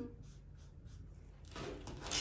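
Faint scratch of a felt-tip marker drawing on pattern paper, with a soft rustle near the end as paper and tools are handled.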